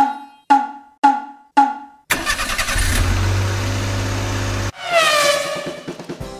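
Four short ringing chimes of one pitch, about half a second apart, then a car engine sound with a low rumble running for about two and a half seconds, ending in a falling, whistle-like tone.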